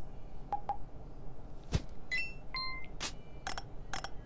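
Scattered sharp clicks and a few short electronic beeping tones, with a louder click near the middle and a held beep about two seconds in, from the soundtrack of a phone lip-sync video.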